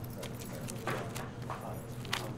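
A few light knocks and paper rustles as a leather document folder and its papers are handled, over a low steady hum.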